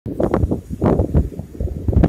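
Wind buffeting the camera microphone in uneven low rumbling gusts, with knocks from the camera being handled close up.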